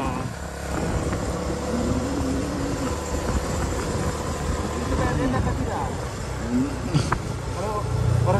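Small motorcycle engine running steadily while riding, with wind noise on the microphone. A single sharp click comes about seven seconds in.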